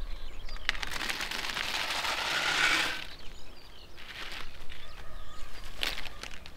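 Walnuts in the shell clattering as a metal bucketful is poured out, a dense rattle starting about a second in and lasting about two seconds, followed by a few scattered knocks of single nuts.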